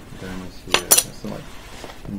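Two sharp clinks in quick succession a little before the middle, with faint murmured voice sounds before and after.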